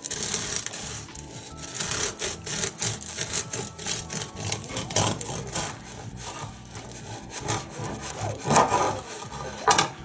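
Serrated bread knife sawing back and forth through the crisp, crusty outside of a freshly baked sourdough loaf on a wooden cutting board, stroke after rasping stroke, with the loudest strokes near the end.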